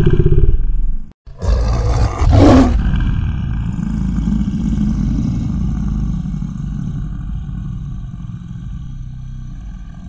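Cinematic logo-reveal sound effect: a deep rumbling hit that cuts out briefly about a second in, then a second hit with a rising whoosh, settling into a long low rumble that slowly fades.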